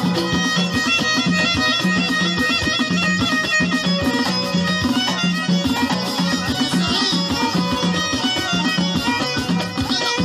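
Moroccan chaabi music: a violin bowed in the upright, knee-held style carrying the melody over a steady, repeating rhythm.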